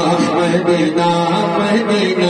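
A man singing a naat, Urdu devotional poetry, into a microphone, drawing out long wavering notes over a steady low drone.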